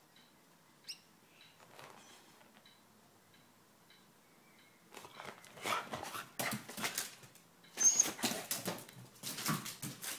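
A dog moving about: first near quiet with a single click about a second in, then from halfway through a run of quick, irregular scuffling and scrabbling noises.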